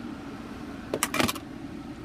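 Steady low hum inside the cabin of a 2015 BMW 328i with the car switched on, with a short cluster of clicks and knocks a little after a second in.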